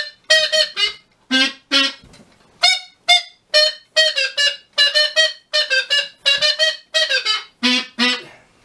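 A wordless tune between sung verses of a song: a quick run of short, separate notes, about two to three a second, with two brief pauses in the first three seconds.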